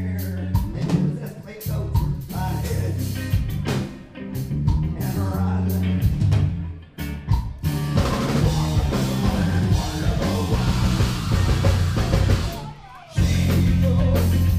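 Live metal band playing loud: distorted guitars, bass and drum kit hammering a stop-start riff with short breaks. In the second half the cymbals fill in more, then the band drops out briefly about a second before the end and comes back in on the riff.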